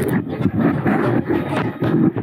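Camera handling noise: rough rustling and irregular knocks as the camera is grabbed, covered by a hand and swung about.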